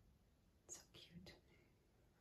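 Near silence with room tone, broken a little under a second in by a brief faint whisper of a few soft syllables.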